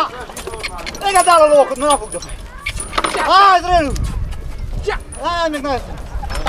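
A man shouting short calls at a pair of draft horses hitched to a log, three loud rising-and-falling shouts about two seconds apart, with harness chains clinking between them.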